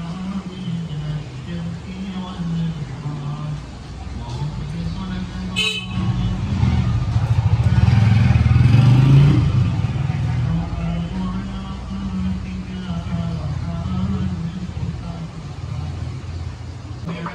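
Street traffic: a motor vehicle's engine drones and swells as it passes close, loudest about halfway through, then fades back. A sharp click comes a little before the peak.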